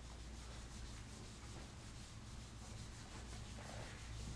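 Handheld whiteboard eraser wiping across a whiteboard: faint, repeated rubbing strokes.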